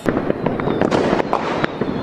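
Fireworks crackling: a dense, irregular run of many sharp pops and cracks at a steady loudness.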